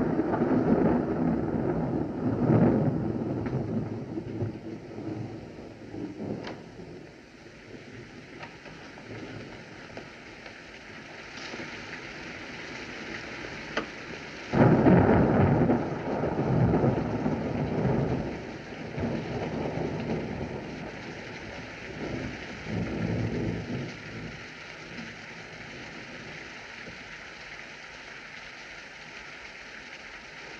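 Thunder over steady rain: a loud clap right at the start and another about halfway through, each rolling away over a few seconds, with fainter rumbles between.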